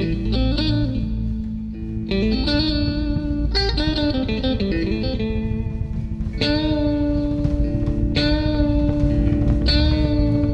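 Blues band's instrumental intro led by an electric guitar picked with a thumbpick, with drums underneath; from about six and a half seconds in the guitar lets notes ring out.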